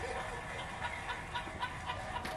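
Laughter in short repeated bursts, following a comedy punchline.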